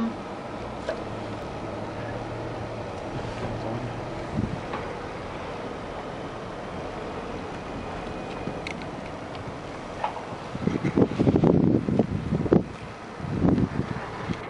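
Steady vehicle and wind noise, with wind gusts buffeting the microphone in loud, uneven rumbles from about ten seconds in and again near the end.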